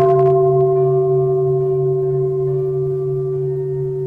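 A bowl bell, of the singing-bowl kind, struck once at the start and ringing on with several steady tones, fading only slowly.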